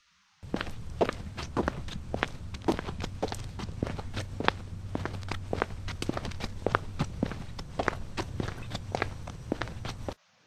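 Footsteps walking up, a quick irregular run of steps over a low steady hum, starting about half a second in and stopping just at the end.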